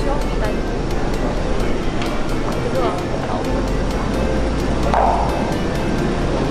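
Backstage hubbub: a steady wash of noise with indistinct voices and music playing underneath.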